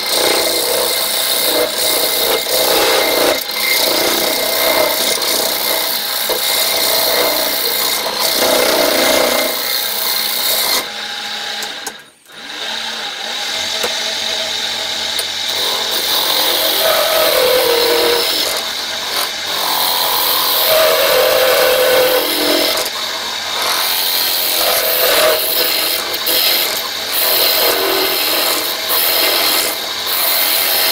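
A turning gouge cutting a spinning carrot wood bowl on a lathe, a continuous rough scraping of shavings coming off the wood. The sound cuts out briefly about twelve seconds in and then resumes, with the lathe running in reverse.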